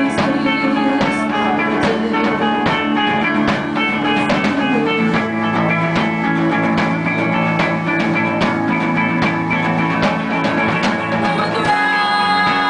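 Live rock band playing an instrumental passage with electric guitar, electric bass and drum kit, with a steady beat. The singing comes back in near the end.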